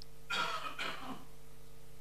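A person clears their throat once at a microphone, a short rough sound of under a second, over a faint steady hum from the room's sound system.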